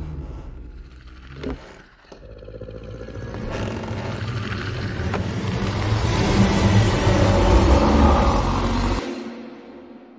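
Horror film trailer soundtrack: a single hit about a second and a half in, then a deep rumbling swell that builds steadily for several seconds, cuts off suddenly near the end and rings away.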